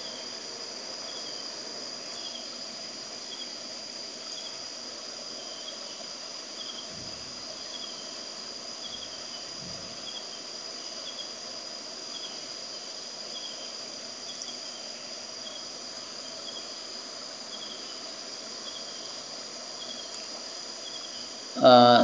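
Crickets chirping in a regular rhythm, about one and a half chirps a second, over a steady high-pitched whine and hiss.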